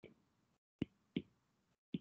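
A stylus tapping on a tablet screen during handwriting: about four short, faint taps in two seconds, with near silence between them.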